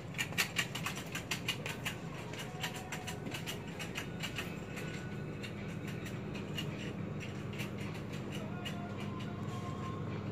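Shop interior ambience: a steady low hum, with a run of small clicks and rustles that are thickest in the first couple of seconds and then thin out.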